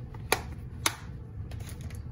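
Two sharp clicks about half a second apart from small hard crafting items being handled on the work table, over a low steady hum.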